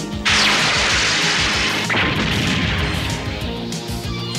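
Cartoon sound effect of a blizzard blast: a sudden loud rushing hiss starts just after the beginning, surges again about two seconds in, and dies away over the next second or so, over the background score.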